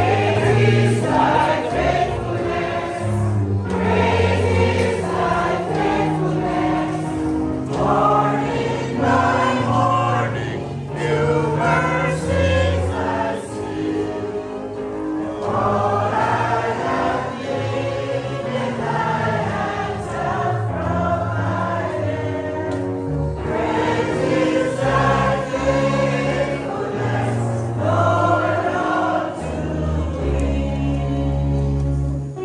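A group of voices singing a gospel hymn together, over an accompaniment of held low notes that change every second or two.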